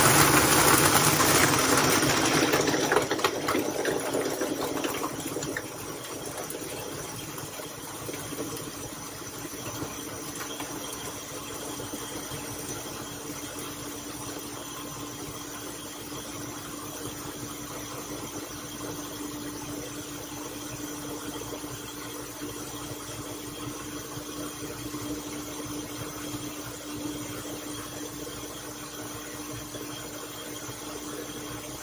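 Countertop blender running at high speed, blending a jar of ice, ice cream and oat milk into a shake. It is loudest over the first five seconds or so, then settles into a steadier, lower whir.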